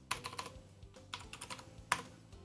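Typing on a computer keyboard: a quick run of keystrokes, a short pause, another run, then one louder key press near the end as the Enter key sends the command.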